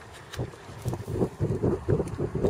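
Wind buffeting the microphone in irregular low gusts, starting about half a second in.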